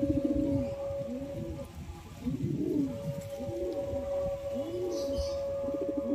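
Domestic pigeon (Kalsira breed) cooing, a rolling low coo repeated about once a second, with the male bowing and spreading its tail in a courtship display.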